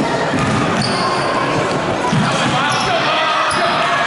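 A basketball bouncing on a gym floor, a thud every so often with the loudest about two seconds in, over the steady chatter of spectators echoing in the hall. A few short high squeaks, typical of sneakers on the court, come through now and then.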